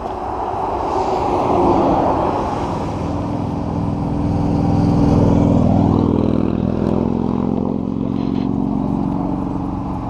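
A motorcycle engine riding past on the road, growing louder to a peak around the middle and then fading as it goes by.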